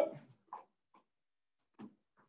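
A few faint, short taps of a soccer ball and feet on a hard floor as a skip-touch drill gets under way, after the tail of a spoken "go".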